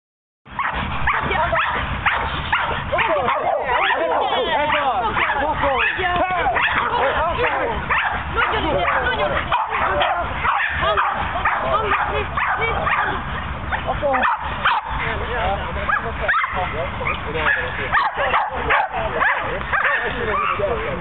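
Small dogs barking and yipping excitedly and almost without pause while a protection-training helper works them up.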